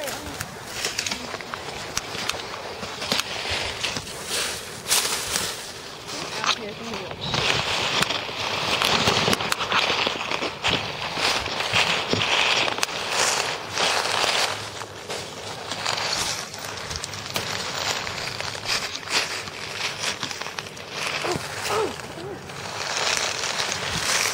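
Footsteps crunching and rustling through dry leaf litter and twigs, an irregular run of crackles and snaps.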